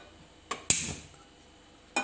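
A few sharp clicks and clacks as an empty nonstick kadai is handled on a gas stove: a light click about half a second in, a louder metallic clack with a short ring right after it, and another clack near the end.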